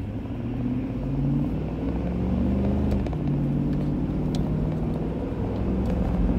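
Car engine and road noise heard from inside the cabin as the car accelerates away: the engine pitch rises, drops about three seconds in as the transmission shifts up, then climbs again.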